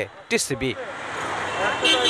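Street traffic noise, an even rush of passing vehicles, after a brief snatch of voice at the start. Near the end a steady pitched tone sounds over it.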